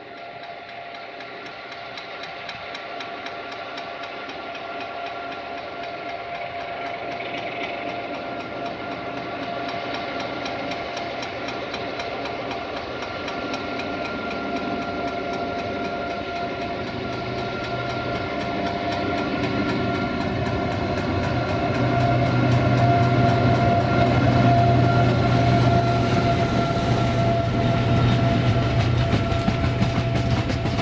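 LDH1250 diesel-hydraulic locomotive approaching with its engine growing steadily louder, with steady tones, then passing close by about two-thirds of the way in. The hauled Bombardier Talent railcars follow, their wheels clattering over the rail joints.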